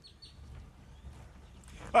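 Quiet outdoor background heard through a remote microphone: a faint low rumble, with a few faint short high chirps near the start. A man starts speaking right at the end.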